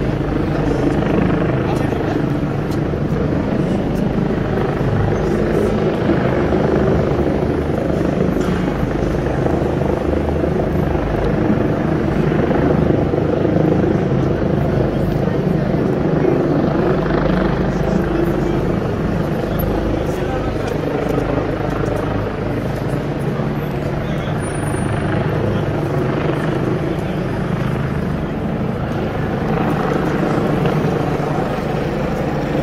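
Busy city street ambience: a steady low traffic rumble with passers-by talking.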